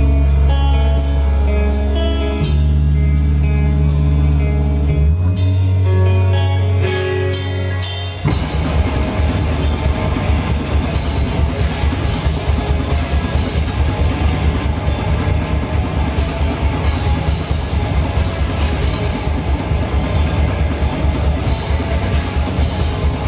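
Heavy metal band playing live: for about the first eight seconds long, held low guitar and bass notes ring out, then the drums and full band come in with a fast, dense pounding beat that carries on to the end.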